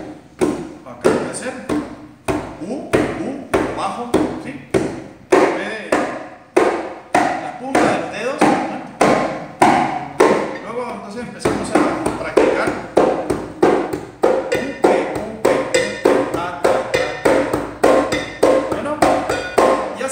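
Conga (tumbadora) played with bare hands in a steady repeating pattern of ringing strokes, a preliminary exercise toward the salsa tumbao. The strokes come more densely from about halfway through.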